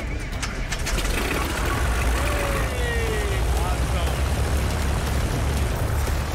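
Beechcraft Bonanza's piston engine running steadily on the ground after being jump-started from a borrowed battery, a low, even drone.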